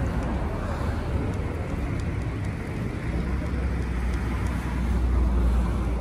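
City street traffic: cars driving past, with a low rumble that swells in the second half as a vehicle goes by.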